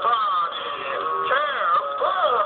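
Spooky electronic Halloween tune with a wavering, swooping voice-like melody, played by a skull-shaped candy bowl prop through its small built-in speaker while its eyes light up.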